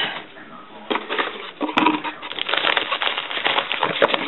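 Rustling and crinkling of foil-wrapped chocolate bars and their cardboard display box being handled, starting about a second in, with a sharp click near the middle.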